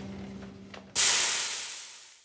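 The last acoustic guitar chord rings and fades, then about halfway through a sudden loud hiss starts and dies away over about a second: a smoke-puff sound effect.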